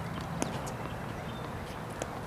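A single sharp knock about half a second in, a tennis ball bouncing on the hard court, over steady outdoor background noise.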